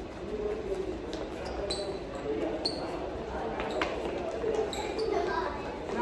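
Quick footfalls and thuds on a gym floor with a few brief shoe squeaks, from people running an agility ladder drill. Voices chatter underneath in an echoing hall.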